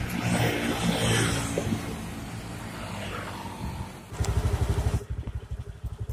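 A motor vehicle engine running, louder in the first second or so and then steadier. About four seconds in the sound changes abruptly to a fast, choppy low throbbing.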